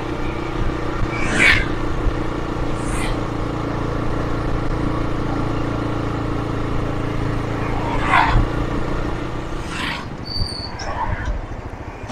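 A motorbike's engine running at a steady cruising speed, with road and wind noise and a few brief rushes of noise. It eases off about ten seconds in as the bike slows.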